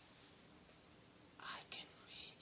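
Near silence for the first second and a half, then a short breathy whisper.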